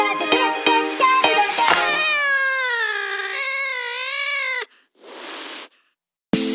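Background music with plucked notes ends in one long, wavering, meow-like pitched call lasting about three seconds. A short hiss follows near the end, then a brief silence.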